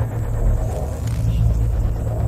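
Film-trailer sound design: a deep, steady low rumble, with the loudest part at the very bottom of the range.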